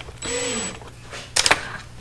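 12-volt cordless drill/driver running briefly to drive a screw back into a plastic gauge cluster housing, with a high motor whine. A few sharp clicks follow a little after halfway.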